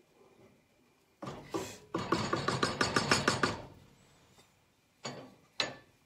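Wooden spoon stirring soup in an enamel pot: a short scrape about a second in, then about a second and a half of quick, even knocks against the pot, and two short taps near the end.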